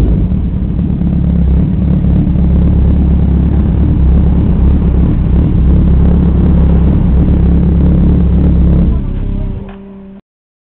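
Motorcycle engines running close by at low speed and idle, a loud steady low rumble. It drops away sharply about nine seconds in.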